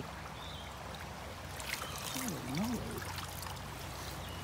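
Steady rush of a shallow creek, with water trickling as a window-screen kick screen is lifted out of it. A brief low voice sound comes about halfway through.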